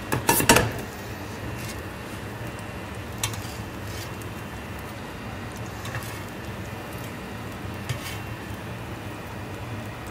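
Kitchen utensils and crockery clinking against a plate and steel counter as a dish is plated up: a quick cluster of clinks at the very start, the loudest moment, then a few light scattered clicks. A steady low kitchen hum runs underneath.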